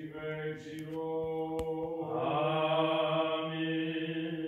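Orthodox liturgical chant at vespers: a single voice sings long, slowly moving held notes, the last one sustained from about halfway through. There is a brief sharp click about a second and a half in.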